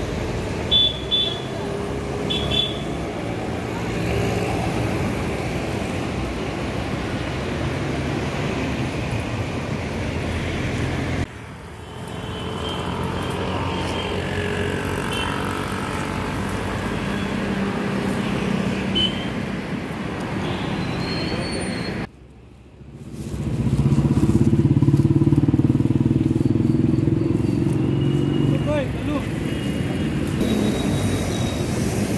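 Roadside street sound: traffic passing and running engines, with indistinct voices. The sound drops out briefly twice where the shots change, and is louder, with a deeper engine hum, in the last third.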